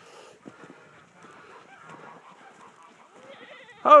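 Goats bleating faintly among scattered farm-animal noise, with a short loud call right at the end.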